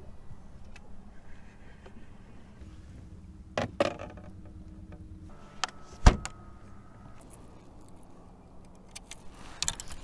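A few sharp knocks and clicks of fishing gear being handled on a boat deck, the loudest about six seconds in, over a low steady hum.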